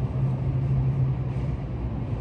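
Steady low hum with a rumble beneath it, like running machinery or an engine heard through walls.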